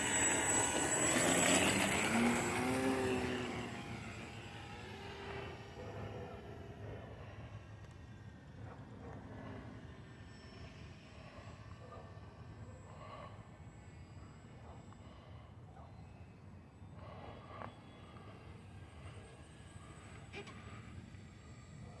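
Electric motor and propeller of a HobbyZone Carbon Cub S+ radio-controlled airplane running at high throttle. It is loud and close for the first few seconds, falling in pitch as the plane climbs away, then fades to a faint steady whine while it flies at a distance.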